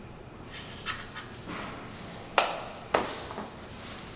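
A chimpanzee with her dolls at her mouth: soft breathy sounds, then two sharp smacks about half a second apart, the loudest sounds here.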